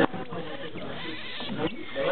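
A sloth's bleating cries as a hand touches it while it is curled up asleep: a protest at being disturbed.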